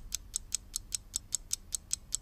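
Ticking-clock sound effect marking a five-second thinking countdown: a steady run of sharp ticks, about five a second.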